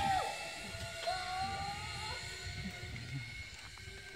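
Zipline trolley running along the steel cable: a steady whine that fades as the rider rolls away down the line.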